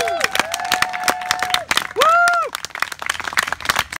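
A small crowd applauding with irregular hand claps, and several voices giving long rising-and-falling whoops. The loudest whoop comes about two seconds in.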